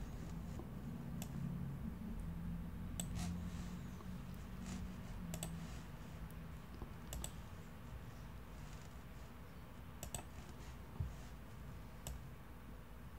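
Scattered clicks of a computer mouse and keyboard, about ten in all, several in quick pairs with pauses between, over a faint low hum. A single soft thump comes near the end.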